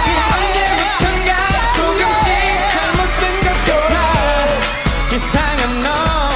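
Korean pop dance song: a male voice singing a wavering melody over an electronic backing track with a steady, driving beat.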